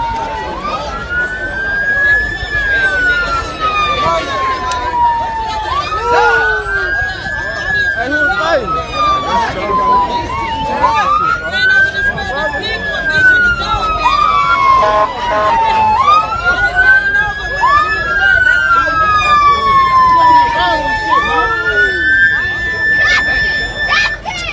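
Emergency vehicle siren wailing, each cycle rising quickly and falling slowly, about every five seconds; near the end it holds a steady high pitch.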